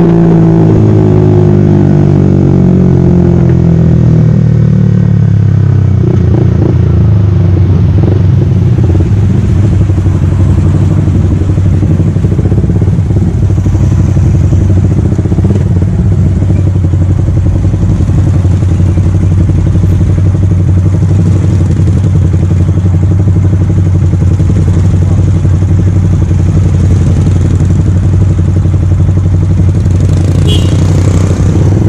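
Yamaha R15 V3's single-cylinder engine, fitted with an aftermarket R9 exhaust, dropping in pitch as the bike slows during the first few seconds, then idling steadily while stopped.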